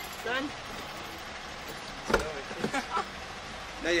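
A car door handle being pulled, with one sharp clunk about two seconds in as the handle and latch snap, against low outdoor background noise.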